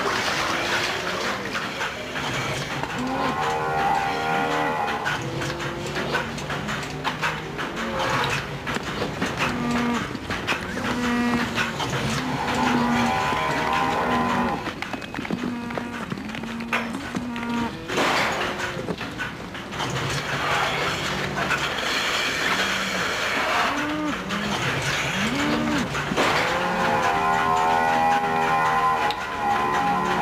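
Holstein-Friesian dairy cows mooing repeatedly, with several long, drawn-out calls among shorter ones.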